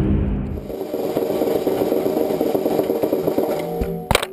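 Background music cuts off in the first half-second. Then a snare drum rolls on its rim over gravel, giving a steady scraping rattle with a ringing note in it.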